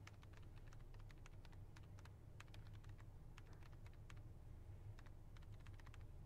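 Faint, irregular keystrokes typed on a tablet's detachable keyboard cover, over a low steady hum.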